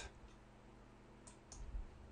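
Computer mouse button clicked: two faint clicks about a quarter of a second apart, over quiet room tone.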